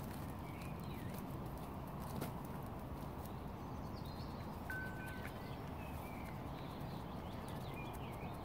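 Mute swan stepping about on its nest of twigs and dry grass, giving a few snaps and rustles over a steady low background rumble. Faint small birds chirp, with one short whistle about five seconds in.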